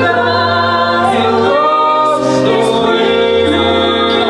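Live singing from a stage musical, voices carrying a sung melody over sustained accompaniment chords.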